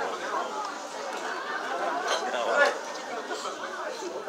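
Spectators' voices chattering over one another, several people talking and calling out at once with no single clear speaker.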